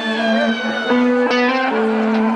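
Amplified electric guitar playing a slow lead line of long sustained notes, with a new note picked about a second in and another near the end.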